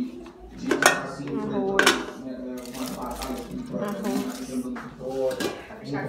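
Metal pot lids and dishes clinking a few times sharply as foil-covered pots of food are uncovered, with people talking in the background.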